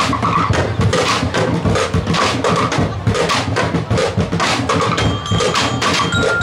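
Drumblek ensemble playing a fast, dense rhythm on drums made from plastic barrels, tin cans and bamboo. Near the end a high, bell-like melody joins in.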